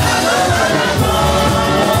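A gospel song sung by several voices into microphones over amplified instrumental backing with a steady beat.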